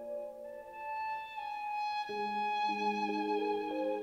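Contemporary chamber music for piano, synthesizer, violin, oboe, two bassoons, two French horns and double bass, playing long held notes. A high sustained line sits over middle notes that shift in steps, and a new low note comes in about two seconds in.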